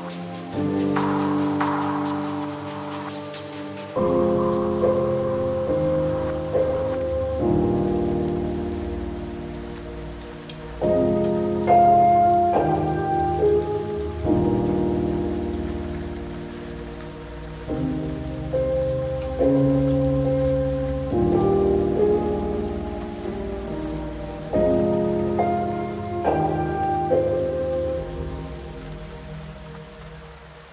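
Soft, slow piano chords, each struck and left to fade, a new one every few seconds, over a steady patter of rain.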